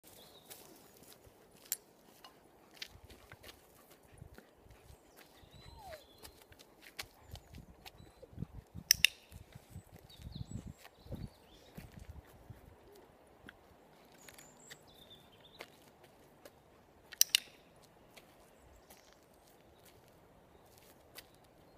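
Footsteps of a person and a dog walking slowly on a dirt-and-gravel yard, soft and uneven, busiest in the middle. Sharp clicks, louder than the steps, come once early and as two quick pairs, one in the middle and one near the end.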